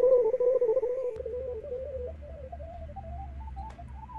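Clean-toned semi-hollow electric guitar played fingerstyle with rest strokes. It plays a fast run of single notes that flutters around one pitch, then climbs higher step by step in the second half.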